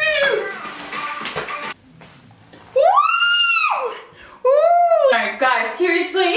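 Background music that cuts off suddenly about two seconds in. After a short gap, a woman's voice gives two long drawn-out squeals, each rising and then falling in pitch, the first one higher. They are followed by voices.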